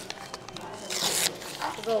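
Paper rustling as a book's pages are turned, with one short rustle about a second in.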